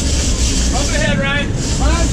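Sportfishing boat under way: a steady low engine rumble under a continuous rush of wind and water. A voice shouts briefly about a second in.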